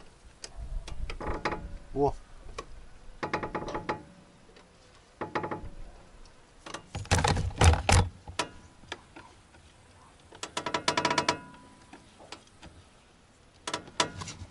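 Front suspension of a VAZ 2106 (Zhiguli) creaking as the car body is rocked up and down by hand: several squeaky creaks a couple of seconds apart, like an old bed. The owner suspects a worn lower ball joint or control arm, perhaps one that has run out of grease.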